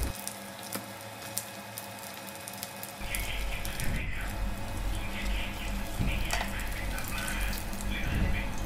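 Sun-dried snakehead fish deep-frying in hot oil in a pan, a steady crackling sizzle that gets louder about three seconds in. This is the final stage on raised heat, which drives the oil out of the fish so it turns crisp outside.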